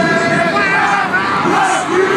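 A large group of football players yelling and shouting at once, many loud overlapping voices in a pre-game battle cry.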